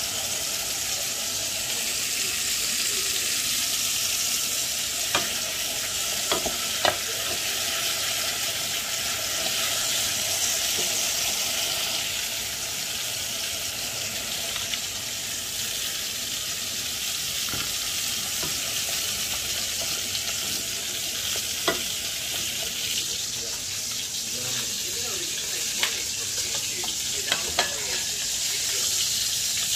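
Food sizzling steadily in a steel cooking pot on the stove, with a few sharp clicks scattered through; the loudest click comes about seven seconds in.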